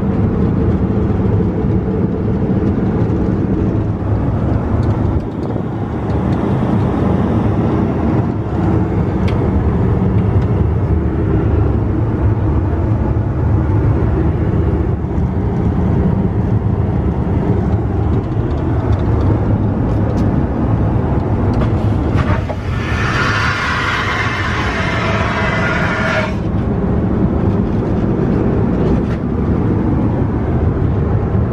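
Steady in-flight noise of an Airbus A321, a loud, even low rumble of engines and airflow heard in the lavatory. About three quarters of the way in, a hiss starts abruptly, lasts about four seconds and cuts off.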